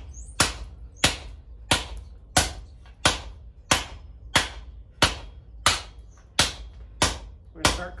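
Straight peen hammer striking red-hot mild-steel flat bar on an anvil in an even rhythm, about twelve blows, roughly one and a half a second, each with a short ring. The blows work down the middle of the bar as the first step in curling it into a tube.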